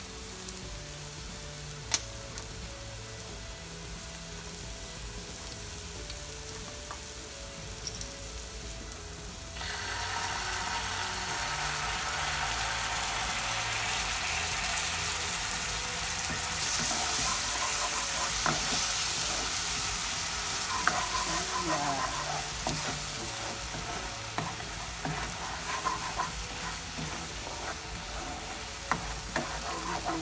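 Minced onion and garlic sizzling in a hot non-stick frying pan, with a single sharp tap about two seconds in. About ten seconds in, cooking cream poured into the pan makes the sizzle suddenly louder and bubbly, while a plastic spatula stirs and scrapes through it.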